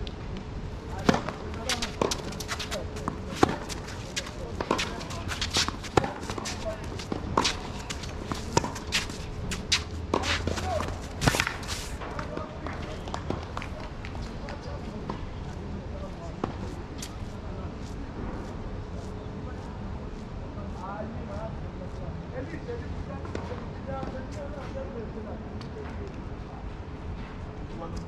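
A tennis rally on a hard court: sharp racket-on-ball hits and ball bounces, about one a second, stopping about twelve seconds in. After that come softer scuffs and shuffles of players moving on the court.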